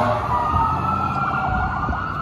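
Fire truck siren in a slow wail, its pitch rising and then holding, with a second siren tone falling beneath it. An air horn blast cuts off right at the start.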